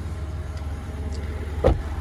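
Steady low rumble of an idling vehicle engine, with a single thump near the end.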